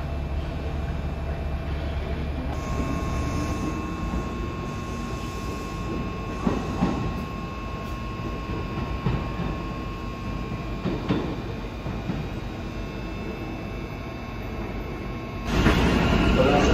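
Kintetsu electric trains moving slowly through a station: a steady low rumble with a thin steady whine from about three seconds in, and a few clanks of wheels over rail joints and points. A louder rush of noise sets in just before the end.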